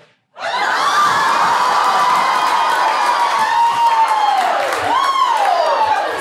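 A live audience bursting into loud laughter and cheering, with high whoops over the crowd noise; it starts suddenly about half a second in.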